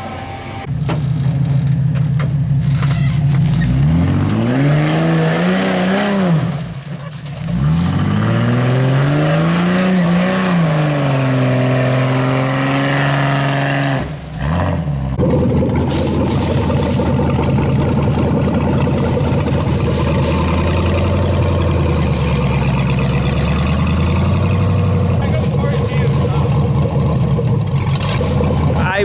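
Off-road vehicle engine running, revving up and back down twice; after a short break about halfway through, an engine runs steadily.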